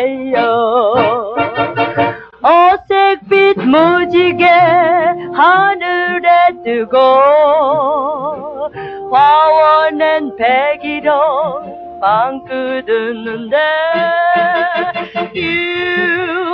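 A woman singing a 1960s Korean pop song with a wide, even vibrato and upward scoops into her notes, over band accompaniment.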